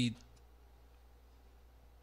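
A man's spoken word cuts off just after the start, then a pause of faint room tone with a low steady hum and a couple of tiny mouth clicks.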